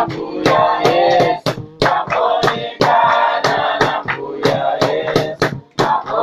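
A church choir sings in harmony, its phrases broken by short breaths, over a steady beat of sharp claps about two or three times a second.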